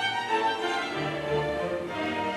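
Solo violin, a 1783 Guadagnini, playing a classical melody in sustained bowed notes over a string chamber orchestra holding lower notes beneath it.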